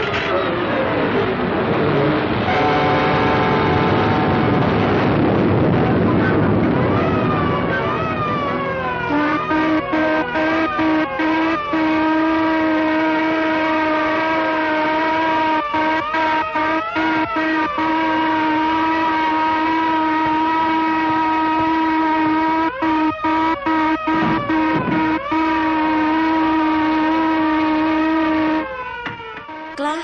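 Orchestral cartoon score with falling swoops for the first eight seconds or so, then a long held chord with sirens wailing up and down over it, suggesting an air-raid alarm. Many brief dropouts break up the old film soundtrack.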